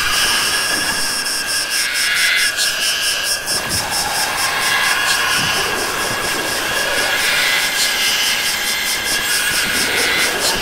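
Noise-heavy experimental electronic music: a dense, roaring wash of distorted sound with a steady high tone held through it and a fast, even ticking pulse in the high end.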